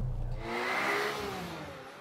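Engine-revving sound effect over a rushing whoosh, swelling about a second in and then fading away.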